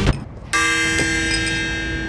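A bell struck once, giving a sudden metallic clang about half a second in that rings on with many steady overtones.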